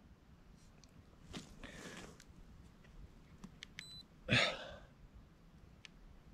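A man's breathing after a missed shot: a faint breath about a second and a half in, then a short, sharp exhale just past four seconds, the loudest sound. Faint handling clicks and a very brief high electronic beep come just before the exhale.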